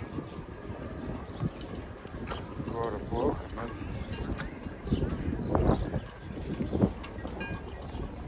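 Outdoor walking ambience: brief, indistinct voices of passers-by about three seconds in and again later, over a low rumble of wind on the microphone, with a few soft thuds that may be footsteps.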